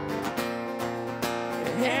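Acoustic guitar strumming chords between sung lines, with a singer's voice coming in near the end.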